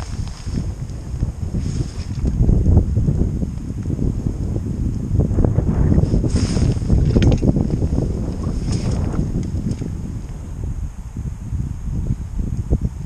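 Wind buffeting the camera microphone in gusts, a low rumbling roar that swells from about two seconds in and eases near the end.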